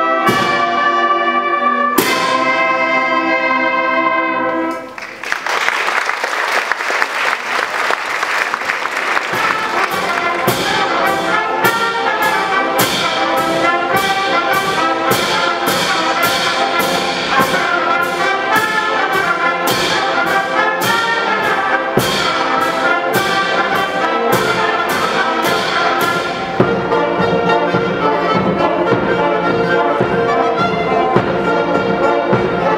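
Student brass band of trumpets and trombones playing: long held chords, a brief break about five seconds in, then a rhythmic piece with a steady beat about twice a second.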